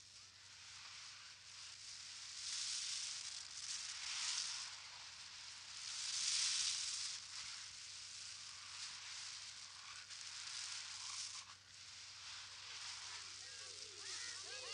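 A high, airy hiss, like sizzling or rushing air, that swells and fades, loudest about three and six seconds in. Faint voices come in near the end.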